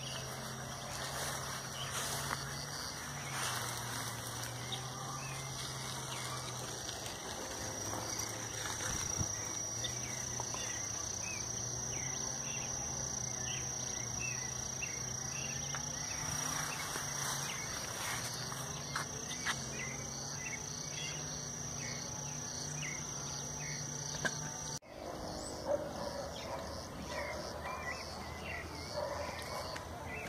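A steady high-pitched insect call, with a faint low hum and scattered light rustles under it; the call stops suddenly about 25 seconds in.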